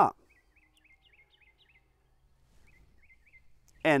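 Faint songbird chirping in a pause of speech: two runs of short, quickly repeated rising notes, the second starting a little before the three-second mark.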